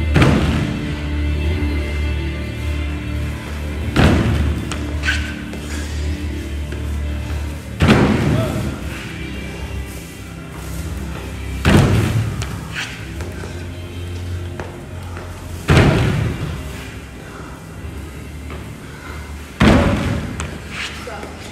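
Feet landing on a wooden plyo box during burpee box jumps: a loud thump about every four seconds, six in all, over background music.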